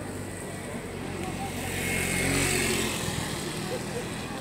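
An engine passes close by, growing louder to a peak about two and a half seconds in, then fading.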